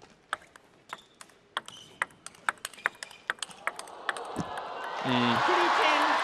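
Table tennis rally: the plastic ball clicking off paddles and table about twice a second, then crowd applause and cheering swelling up from about halfway through as the point ends.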